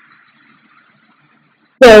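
A brief pause in a woman's speech: only faint steady background hiss, then her voice starts again near the end.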